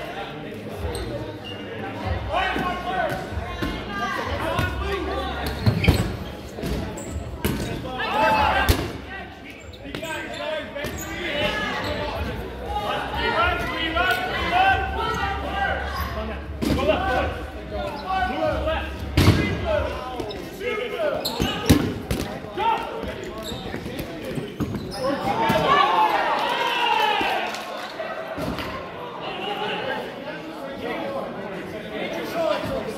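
Several players calling and shouting over one another during a dodgeball game in a large hall, with dodgeballs hitting the wooden floor or players in a handful of sharp thuds. A louder burst of shouting comes near the end.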